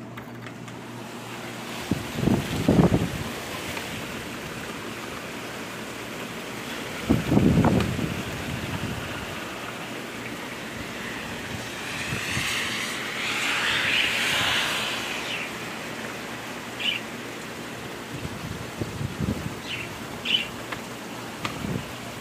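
Heavy hurricane rain falling steadily, swelling louder for a few seconds around the middle, with two low thumps in the first half and a few short bird chirps near the end.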